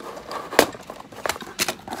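Utility knife slicing through packing tape on a cardboard box, then the cardboard flaps being pulled open, with a few sharp clicks and crackles.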